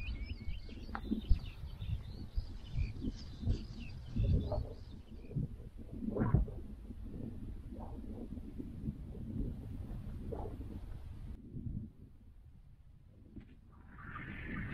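Small birds chirping over a low, gusty rumble of wind on the microphone on open moorland; the sound turns quieter and duller near the end.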